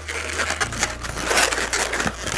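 Inflated latex twisting balloons rubbing against each other and against the hands as a multi-bubble balloon body is twisted and adjusted, an uneven run of scratchy rubbing noises.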